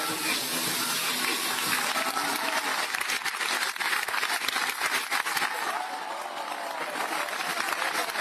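Crowd applauding over splashing water, with scattered voices; the clapping is thickest about three to five seconds in.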